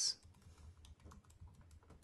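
Faint typing on a computer keyboard: a quick run of keystrokes as a word is typed.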